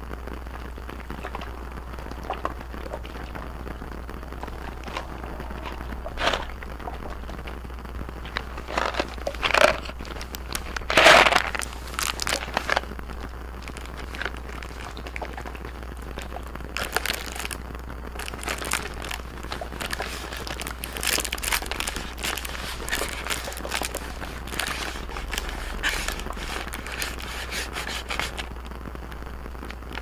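Crinkly clear plastic being handled close to the microphones: an irregular crinkling and crackling. It comes in scattered bursts, loudest a little past a third of the way in, and grows busier through the second half.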